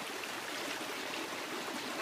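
Shallow creek running, a steady even rush of flowing water.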